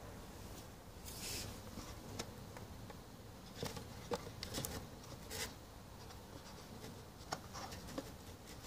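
Faint scratchy rubs and small clicks of fingers gripping and working the threaded neck of a plastic bottle, a handful of brief irregular touches over a low background hiss.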